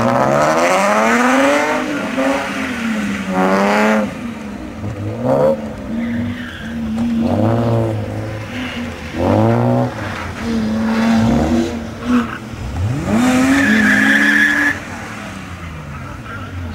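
A racing car's engine revved hard and repeatedly: the pitch climbs, drops back and climbs again every couple of seconds. A tyre squeal comes about 13 seconds in.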